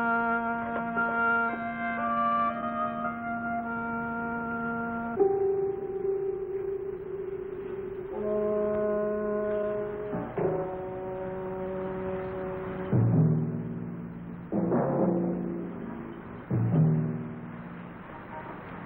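Orchestral film score led by brass: sustained chords and a long wavering held note, then three loud, sudden accented chords in the last five seconds.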